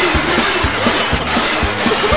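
Lively cartoon soundtrack music with a bass note about twice a second, over the clatter and crash of breaking crockery.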